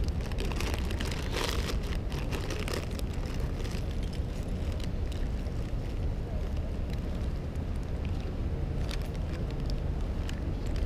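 Steady low wind rumble on the microphone, with light rustling and clicks from a backpack being searched, busiest in the first few seconds and again near the end.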